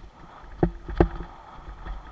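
Mountain bike rattling over a bumpy dirt trail: two sharp knocks about half a second and a second in, each with a short metallic ring, over a low steady rumble of rolling.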